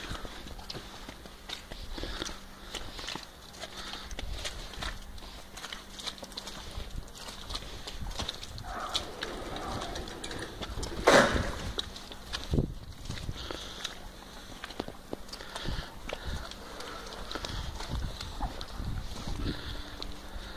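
Footsteps crunching in snow at a walking pace, with rustling from a handheld phone. There is one louder sudden noise about eleven seconds in.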